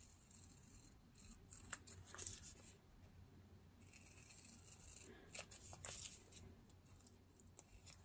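Scissors cutting through a paper strip faced with washi tape, faint, in two runs of short snips.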